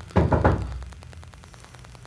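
A quick run of knocks on a door near the start, answered a moment later by "come in".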